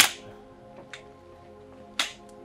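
Dramatic background film music with sustained notes, struck through by a sharp hit with a short ringing tail at the start and another at the end, and a fainter click about a second in.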